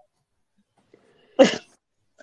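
Near silence, broken about a second and a half in by a single short vocal sound, like a cough or a clipped bark.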